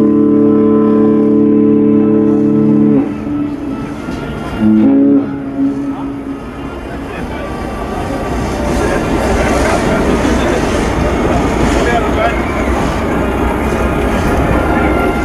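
Cruise ship's horn sounding one long chord-like blast that cuts off about three seconds in, then a short second blast at a different pitch. After it, the noise of a crowd builds over a low rumble.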